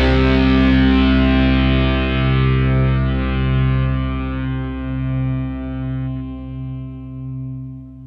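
The last distorted electric guitar chord of a stoner rock song ringing out and slowly fading away, its high notes dying first while the low notes hang on.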